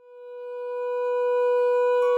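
A single held drone note, close to a pure tone, swelling in from silence and then holding steady at one pitch.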